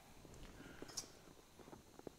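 Near silence, with faint light taps and rustles of gloved hands handling a steel dash panel, and one small sharp tick about a second in.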